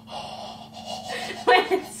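A man's breathy gasp and open-mouthed breathing, reacting to cold makeup being dabbed on his face, then a short voiced laugh about one and a half seconds in.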